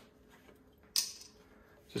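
A single sharp click of plastic being handled on a kitchen countertop about a second in, against quiet room tone.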